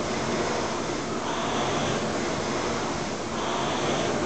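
Concept2 rowing machine's air-resistance flywheel spinning with a steady rush that swells briefly on each drive stroke, twice here, about one stroke every two seconds at a rate of 29 strokes a minute.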